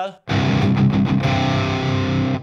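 Distorted electric guitar played through a Driftwood Purple Nightmare amp head's own distortion, with the drive pedal switched off. It starts about a quarter second in and rings on steadily.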